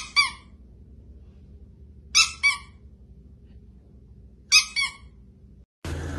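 Chihuahua yipping: three quick double yips about two seconds apart, each short high note falling in pitch.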